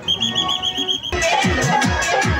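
A high, warbling whistle trills for about a second, then loud dance music with a heavy bass beat cuts in abruptly.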